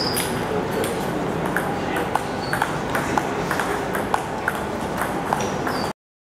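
Table tennis ball ticking sharply and irregularly, a dozen or so clicks of ball on table and bat over a few seconds, over a murmur of voices in the hall; the sound cuts off suddenly just before the end.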